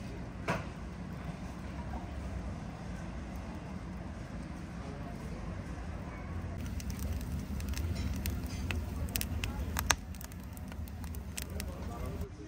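Wood fire crackling and popping in the firebox of a steel drum stove as burning sticks are pushed in, over a steady low rumble. The crackling grows denser from about halfway, with one sharp pop near the end.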